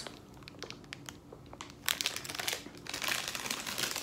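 A shiny plastic snack bag of Twix Unwrapped Bites crinkling as it is handled, faint at first and then a run of crinkling from about two seconds in.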